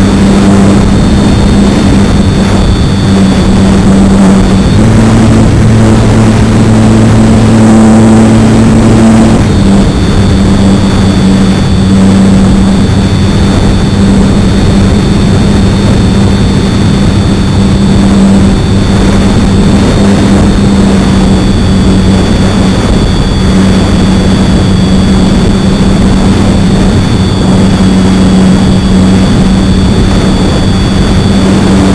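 Electric motor and propeller of a HobbyZone Super Cub RC plane in flight, heard from a wing-mounted camera: a loud, steady drone with wind rush over the microphone. The pitch steps up about five seconds in and drops back about four seconds later.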